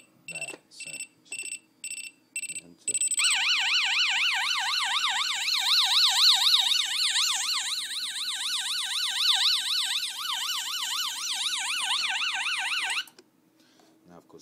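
Scantronic 8136 intruder alarm panel on its engineer's sounder test: the keypad sounder beeps about twice a second, then about three seconds in the panel's loudspeaker starts a loud, fast-warbling siren tone, which cuts off suddenly about a second before the end.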